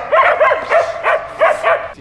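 Rough collies barking excitedly during play: a rapid series of short, sharp barks, about three a second.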